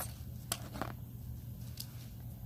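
Soft handling noise as a plush zippered pouch is opened and the plastic-packaged items inside are touched: a few faint clicks and rustles over a low steady hum.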